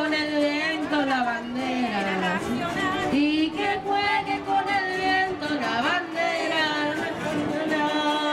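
A group of children and adults singing together to strummed cuatros (small four-string Venezuelan guitars), the voices holding long, wavering notes.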